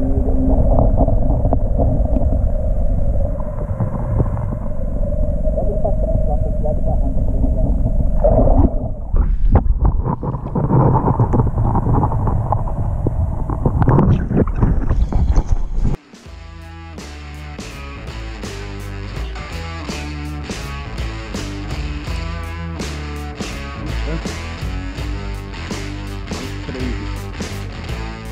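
Muffled underwater noise from a camera held beneath a river's surface: a dense low rumble with a steady hum, and water surging as the camera moves and breaks the surface. About sixteen seconds in, it cuts suddenly to music with a steady beat.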